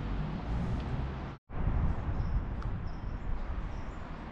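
Outdoor ambience: a steady low rumble under an even hiss. It cuts out completely for a moment about a second and a half in, and a few faint high chirps follow later on.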